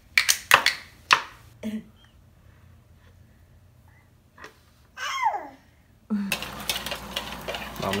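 A baby knocking a spoon on a plastic bucket, several sharp knocks in the first second or so, and a short falling baby vocal sound around five seconds. About six seconds in, beaten eggs start sizzling in a frying pan, with the clinks of a wire whisk.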